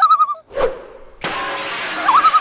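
Title-sequence sound effects: a short horse-whinny effect with a wavering pitch, a whoosh about half a second in, then a steady alarm-clock bell ringing from just past a second in.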